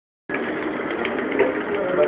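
Espresso machine running with a steady mechanical noise that starts a moment in.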